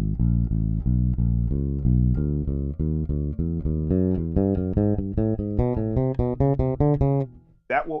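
Electric bass guitar playing a chromatic finger exercise: an even run of single plucked notes, about three to four a second, climbing steadily in pitch. The right hand plucks with alternating index and middle fingers. The run stops shortly before the end.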